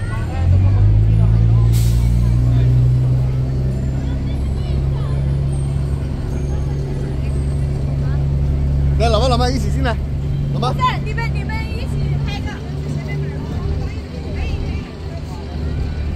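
Diesel engine of a bus running close by, a steady low drone that swells about half a second in and eases off around twelve seconds, with a short hiss about two seconds in. Passers-by talk briefly about nine seconds in.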